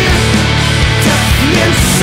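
Heavy metal band recording playing loud and without a break: distorted electric guitars and bass holding low notes over a steady drum beat.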